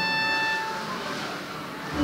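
Bowed string instrument of the violin family played solo: a held high note fades out in the first second, the playing is quieter through the middle, and a loud lower note is bowed in at the very end.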